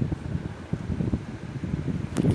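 Low, uneven rumbling background noise with small irregular surges and no clear tone.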